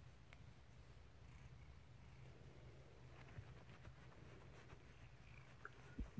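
Very faint purring of a domestic cat, close to near silence, with a couple of soft ticks about three and a half seconds in.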